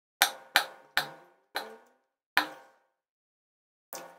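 A metal fork clinking against a ceramic plate: six sharp taps, each with a short ring, the first three in quick succession.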